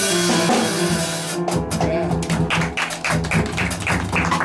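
Live jazz combo playing a bossa nova, led by grand piano over upright bass and drums. The drum strokes set in as a steady beat from about a third of the way in.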